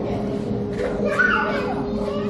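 A young child's high voice calling out about a second in, over a steady low hum and the chatter of a large indoor hall.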